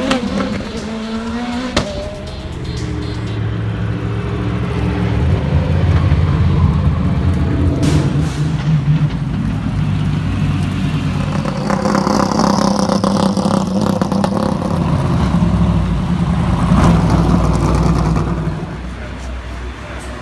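Race car engines: one rising and falling in pitch as it revs through the gears near the start, then a steady low engine note through most of the rest, dropping away near the end.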